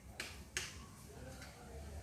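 Needle and thick cotton yarn being pulled through coarse jute sacking during hand stitching, giving two short, sharp snaps in the first half-second, then faint rustling.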